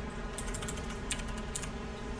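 Computer keyboard keystrokes: a handful of short, separate key clicks, spaced irregularly, typed at a moderate pace.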